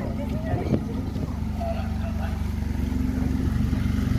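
DeLorean DMC-12's PRV V6 engine running steadily at low revs as the car rolls slowly past, growing a little louder toward the end.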